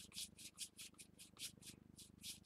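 A paintbrush brushing white gesso onto the edges of a stretched canvas: faint, quick, even strokes, about five a second.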